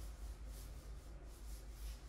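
Faint rubbing and scraping of wooden chopsticks picking through pieces of cooked octopus on a plate, in a few soft swells over a low, steady background hum.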